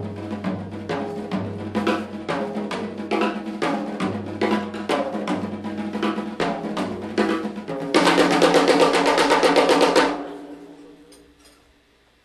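Live jazz band with the drum kit to the fore: a steady run of snare and drum strokes over pitched bass notes. Near the end it builds into a loud two-second drum roll with cymbals, which then rings out and fades away.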